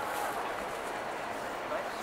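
Street ambience of a busy pedestrian walkway: indistinct chatter of passers-by over a steady city hum.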